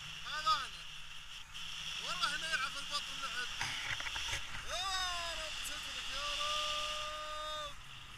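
A man's voice calling out in several drawn-out vocal sounds, rising and falling in pitch, the last one held steady for over a second near the end, over steady wind rushing across the microphone in flight.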